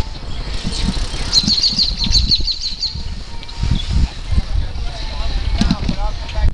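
Wind and riding noise buffeting a handheld camera microphone on a moving bicycle: a constant low rumble with irregular bumps. About a second and a half in, a bird sings a quick trill of about ten high notes.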